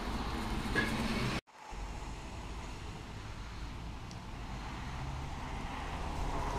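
City buses passing close by at low speed: an engine hum and road noise from one bus, broken by a sudden drop-out about a second and a half in, then the low engine hum of an articulated bus, growing louder toward the end as it passes.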